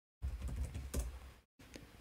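Computer keyboard keys tapped in a quick run of light keystrokes as a password is typed into an authentication prompt. The sound drops out completely for a moment about one and a half seconds in.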